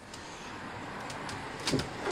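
Grey roofing membrane rustling and being handled, with a few faint ticks and a soft bump near the end.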